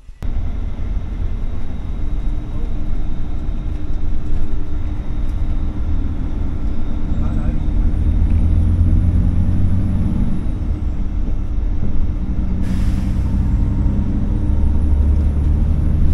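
Coach bus running at road speed, heard from inside the passenger cabin: a steady low engine and road rumble whose engine note shifts in pitch. A faint high whine rises twice, and a short hiss comes about three-quarters of the way through.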